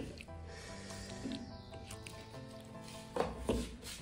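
Background music with held notes; from about three seconds in, a few scraping strokes of a stone pestle grinding salsa against the basalt bowl of a molcajete.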